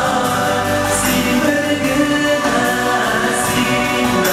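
Two male singers performing a Tatar-language nasheed live, singing in harmony over a musical backing, holding notes for about a second at a time.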